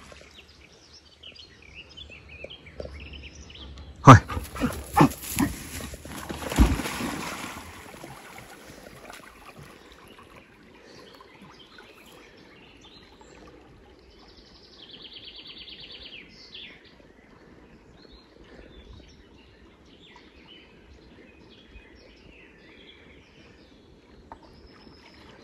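A dog plunging into a river: a run of sharp thumps and splashes about four to seven seconds in, the loudest near the start, then only faint sounds as it swims off.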